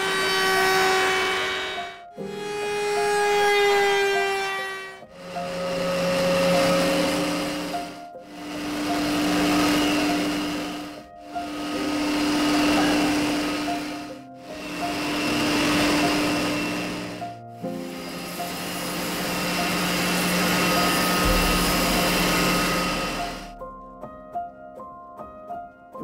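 Woodworking machines working a bent hardwood chair-backrest part: a router table's bearing-guided bit trimming the edge, then a spindle sander, in a run of short passes. Each pass swells and fades over about three seconds over a steady motor hum, and the passes are separated by abrupt breaks.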